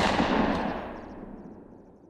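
Logo-sting sound effect: one sudden boom-like hit that fades away in a long tail over about two seconds, the high end dying out first.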